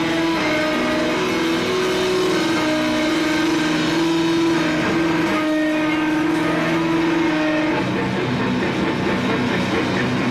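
Live rock band: a loud, distorted electric guitar holding long sustained notes over a drum kit, with the texture turning denser and noisier about eight seconds in.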